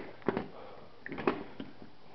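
Three short, light knocks and clicks as the metal retractable landing gear assembly of a model jet is picked up and handled.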